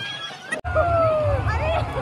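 Young women laughing and shrieking. About half a second in the sound breaks off and is replaced by a water-slide ride: a strong low rumble under a long falling squeal and more excited shrieks.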